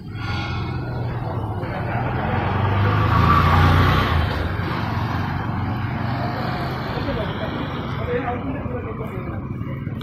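A motor vehicle passing on the road: engine and road noise swelling to a peak about three to four seconds in, then easing off.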